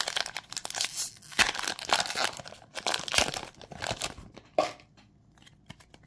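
A Pokémon trading card booster pack's foil wrapper being torn open and crinkled by hand, a dense crackling rustle that stops about four and a half seconds in, followed by a few faint handling clicks.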